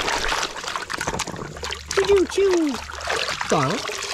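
Hands sloshing and scrubbing toys in a plastic basin of muddy water, with splashing and trickling. Two short wordless vocal sounds come about halfway through and again near the end.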